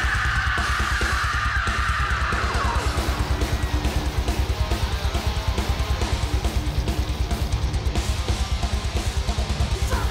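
Heavy metal band playing live: the singer's long, high, raspy scream fades out about two seconds in, over a rapid bass-drum beat and distorted electric guitars.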